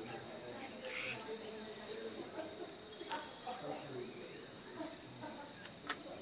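A bird calling a quick series of four high, falling chirps about a second in, over a steady thin high-pitched whine and a faint murmur of distant voices.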